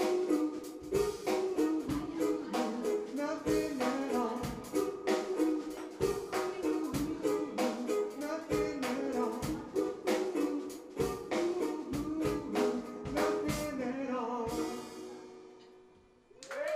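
Live band of ukulele, bass guitar and drum kit playing Hawaiian music over a steady drum beat. The song finishes about two seconds from the end, with a last chord ringing and fading away.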